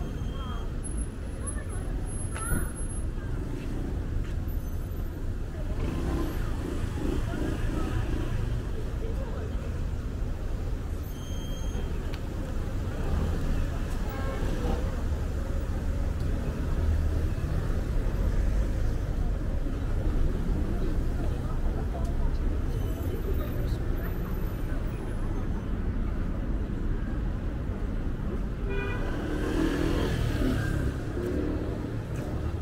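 Busy city street ambience: a steady low traffic rumble with passers-by talking.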